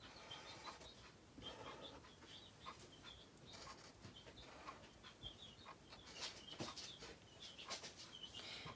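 Faint short scratching strokes of a black felt-tip marker drawing on paper, with small high squeaks from the tip.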